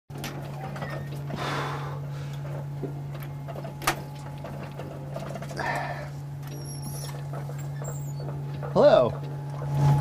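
Steady low hum of the space station's cabin fans and equipment, with a few short swishes and a sharp click, and a brief vocal sound near the end.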